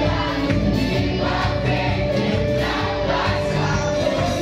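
Loud gospel worship song, many voices singing together over amplified music from a sound system.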